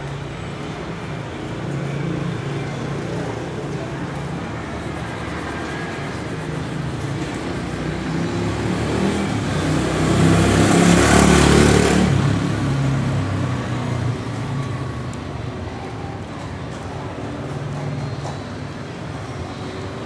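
Street traffic with engines running; a motor vehicle passes close by, swelling to its loudest about ten to twelve seconds in and then fading.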